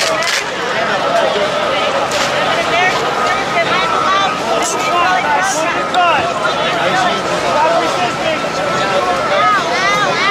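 Many voices shouting and calling over one another, indistinct, with a thin steady high tone underneath.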